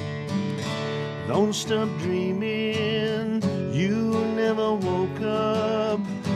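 Acoustic guitar strummed in a steady rhythm, with a melody line over it that slides up into long, wavering held notes several times.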